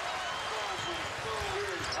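Basketball game on a hardwood court: a basketball bouncing as it is dribbled and short sneaker squeaks, over steady arena crowd noise.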